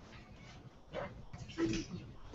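Faint, indistinct voices in a room, in short snatches, with a brief higher vocal sound near the end.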